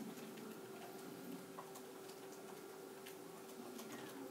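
Quiet classroom room tone: a steady faint hum with scattered light clicks and taps at irregular intervals.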